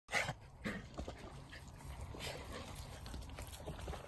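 A puppy making short dog noises as it noses at a log stump. The loudest comes right at the start, with smaller ones after it, over a low rumble.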